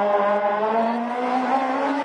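Suzuki Swift rally car's engine accelerating hard away up the road, its pitch rising steadily in one gear. It cuts off abruptly at the end.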